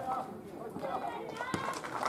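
Footballers calling out to one another across the pitch during play, with a dull thump about one and a half seconds in.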